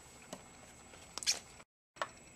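Faint handling sounds of stamping tools on a craft mat: a soft tap about a third of a second in, then a short cluster of small clicks a little past one second as the clear acrylic stamp block is moved and set down. The sound cuts out abruptly near the end.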